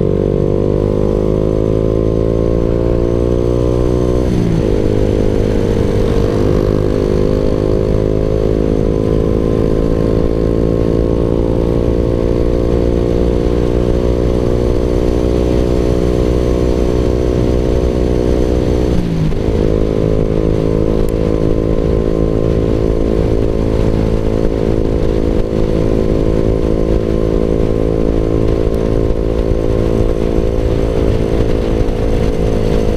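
Suzuki Raider R150 Fi's single-cylinder engine, heard from the rider's seat while under way and pulling. Its pitch climbs steadily, drops sharply about four seconds in and again around twenty seconds in as the rider shifts up a gear, then keeps rising.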